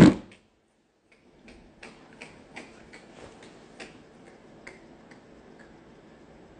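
A man's brief laugh, then a run of faint, irregular clicks, about two or three a second.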